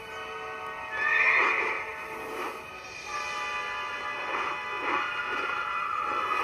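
Sustained film-score music with a horse's whinny standing out loud about a second in, from an animated winged horse.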